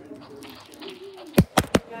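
Three quick thumps close to the microphone, the phone being handled and bumped, over faint voices in the background.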